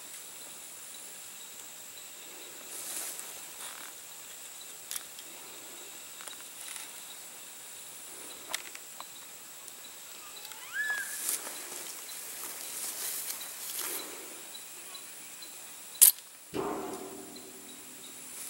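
Outdoor field ambience with a steady high insect drone and soft handling rustles. Near the end comes a single sharp snap, followed by gusty wind rumble on the microphone.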